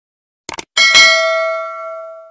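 Subscribe-button animation sound effect: a quick click, then a bright notification-bell ding that rings and slowly fades.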